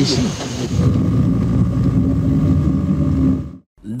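Old archival film soundtrack: a loud, noisy low rumble with indistinct voices and a faint steady high tone, cutting off abruptly about three and a half seconds in.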